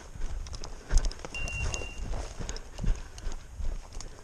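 Footsteps crunching through dry leaf litter and undergrowth, with branches and brush rustling against the walker, in uneven heavy steps; the loudest thuds come about a second in and near three seconds. A brief high steady beep sounds about a second and a half in.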